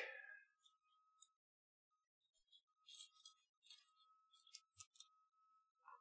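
Near silence, with faint scattered clicks from a nylon zip tie being threaded and pulled through its lock around a wiring harness, mostly in the second half. A faint thin steady tone comes and goes.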